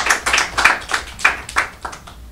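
Audience applauding in a room, the clapping stopping just before the end.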